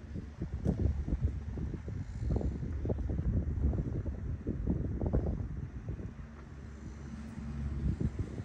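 Wind buffeting the microphone in irregular low gusts. About six seconds in the gusts ease and a steady low hum comes through.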